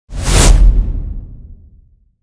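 Intro whoosh sound effect with a deep rumbling low end, swelling up sharply and fading away over about a second and a half as the channel logo is revealed.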